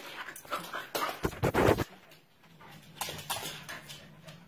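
Shetland sheepdog making close-up breathing and snuffling noises in irregular bursts while playing. The loudest burst comes about one and a half seconds in, and it is quieter near the end.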